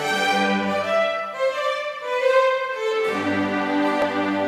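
String chamber orchestra of violins and cellos playing sustained, bowed notes. About a second in, the low cello part drops out, leaving the violins alone on a slow melody, and the cellos come back in about three seconds in.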